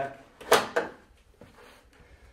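A sharp clack about half a second in, then a softer second one, from the Concept2 Dynamic RowErg's handle cord and pulley hardware knocking against the metal rail as the cord is pulled through the pulleys.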